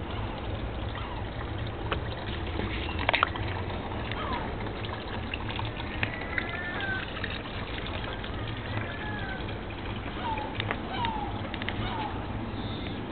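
Outdoor garden ambience: a steady low rumble under scattered short bird chirps, with a few sharp clicks about three seconds in.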